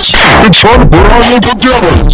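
Heavily distorted, clipped voice at near full loudness, its pitch swooping up and down.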